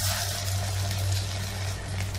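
Open gas stove burner hissing steadily, over a low constant hum.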